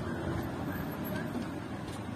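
Outdoor street noise: a steady low rumble with no single distinct event.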